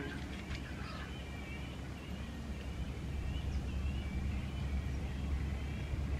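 Faint wavering bird calls repeating over a low, steady outdoor rumble.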